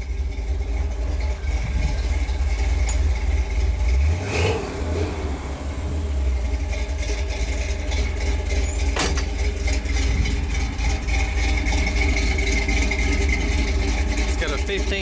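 350 cu in Chevrolet V8 with a 282 cam, idling steadily through a Magnaflow dual exhaust, with one sharp click about nine seconds in.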